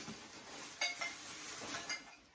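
A few light metallic clinks, about a second in and again near the end, over soft rustling.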